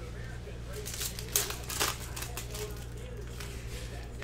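Trading cards and their plastic holders handled by hand: light rustling with a few sharp clicks, the sharpest between about one and two seconds in, over a steady low room hum.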